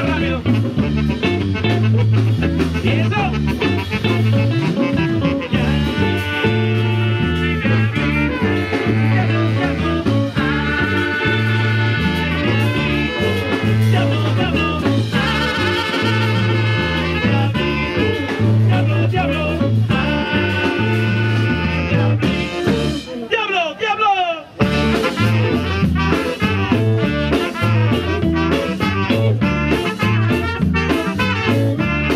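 Live cumbia band playing: electric bass line, guitar, trumpet and saxophone lines, and a lead singer. About three-quarters of the way through there is a short break with a falling slide before the full band comes back in.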